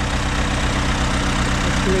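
Massey Ferguson 165 tractor's four-cylinder Perkins diesel engine idling steadily, with an even low beat.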